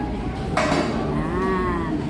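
A woman's drawn-out wordless vocal sound, starting breathy about half a second in, then a held vowel that rises and falls in pitch for about a second, over the steady background din of a busy restaurant.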